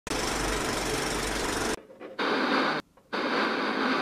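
Intro sound effects: a film projector's rapid rattling clatter over a low hum for the first second and a half or so, then two bursts of TV static hiss separated by a short gap.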